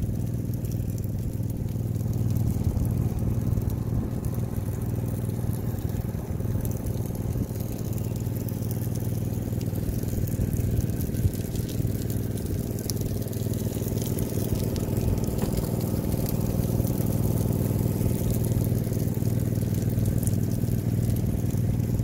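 A vehicle engine running steadily with an even low hum.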